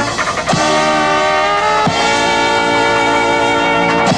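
A small street band of clarinet, trumpet, trombone and drum kit playing long held chords. The chord changes about half a second in and again near the two-second mark, each change marked by a sharp stroke.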